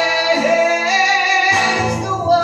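A singer holding long notes into a microphone over acoustic guitar. The guitar drops back in the middle and comes in again with a strum near the end.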